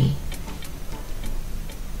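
The tail of a long spoken "bye" fades out, then faint regular ticking, about two ticks a second, over a steady low hum.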